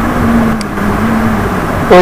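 A man's drawn-out hesitation sound, one long low held 'uhh', over a steady background rumble and hiss, with a faint click about half a second in.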